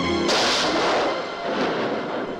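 A single loud gunshot about a third of a second in, cutting off the music, its report fading away over about a second.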